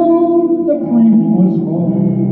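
Solo electric guitar played live through an amplified PA, sustained ringing chords with reverb that change about a second in.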